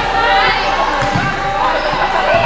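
Indoor volleyball rally: a few dull ball thuds about a second in, over players' calls and shouts, echoing in a large sports hall.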